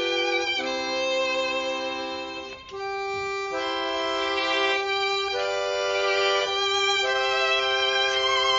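A violin and an accordion playing a slow piece together in held, sustained notes that change every second or so. There is a brief dip between phrases about two and a half seconds in.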